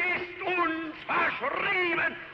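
A man orating in a high, strained shouting voice, with long drawn-out vowels and a short break about a second in.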